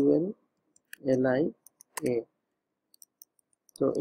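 Computer keyboard keys clicking as code is typed: scattered, faint, light keystrokes falling between short bits of speech, with a run of them near the end.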